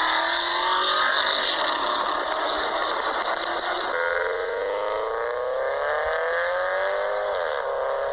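Two car engine recordings back to back. The first, an engine note climbing slowly, cuts off about four seconds in. The second is a Subaru Forester accelerating, its engine note rising steadily and then dropping near the end.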